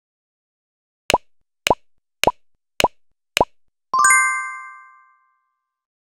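Five short cartoon pops about half a second apart, each quickly rising in pitch, then a bright chime of several tones that rings out and fades over about a second.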